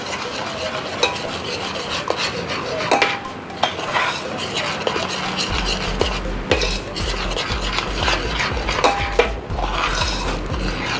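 A metal spoon stirs cocoa powder into cream in a stainless steel pot, scraping the pot and knocking against its sides with frequent small clicks and the odd brief ring. A low hum comes in about halfway through.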